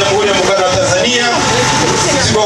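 A man speaking into a handheld microphone, his voice amplified.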